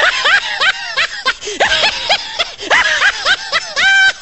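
High-pitched laughter: a quick run of short cries, each rising and falling in pitch, several a second.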